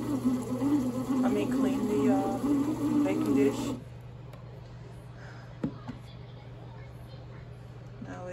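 Pohl Schmidt bread machine's kneading motor running with a whine that wavers in pitch as it turns a ball of dough, then stopping abruptly about halfway through. A single click follows a little later over a low steady hum.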